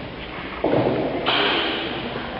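Small spherical magnet rolling down an inclined aluminium channel: a rolling rumble that starts just over half a second in and turns louder and brighter about half a second later.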